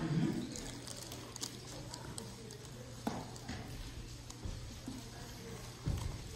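Quiet congregation sounds: faint rustling and scattered light knocks as Bibles are taken from the pews and their pages turned, with faint voices and a low steady hum underneath.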